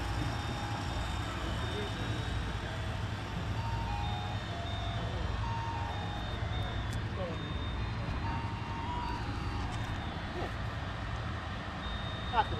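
Steady low outdoor rumble, with a faint electronic tune of short beeping notes at changing pitches playing over it.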